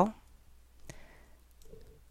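A single sharp click about a second in, from typing on a computer keyboard during code editing.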